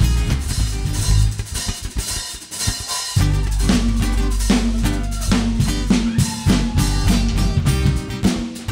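Live drum kit playing with a band: kick drum, snare and rimshots carry the first three seconds almost alone, then a low bass part and the rest of the band come back in about three seconds in.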